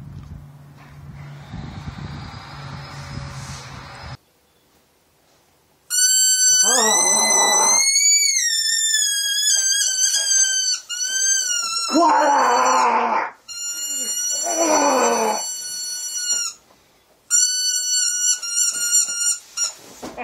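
A toy squeaker squeezed over and over close to the microphone, giving long, loud, high-pitched squeals that waver up and down in pitch and stop and start every couple of seconds. A lower, wavering sound runs under several of the squeals. A faint low hum comes first, then a moment of near silence before the squealing begins.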